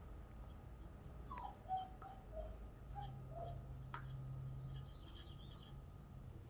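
German Shepherd puppy chewing on a tennis ball, faint, with a few soft, short squeaky whines in the first half and a couple of light clicks.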